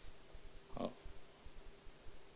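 Faint hall room tone with a steady low hum. Just under a second in comes one brief, low, grunt-like sound.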